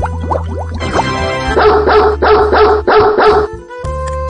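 Cheerful background music, then a dog barking four times in quick, even succession, louder than the music.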